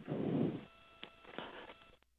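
Launch commentary radio loop open between callouts, with a narrow phone-like sound: a brief hiss for about the first half second, then a faint steady line hum with a couple of soft clicks.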